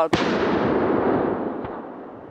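A single shot from a Blaser hunting rifle right at the start, its report echoing and fading away over about two seconds.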